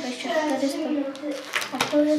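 Indistinct voices talking, too low or unclear to make out words, with a few faint clicks.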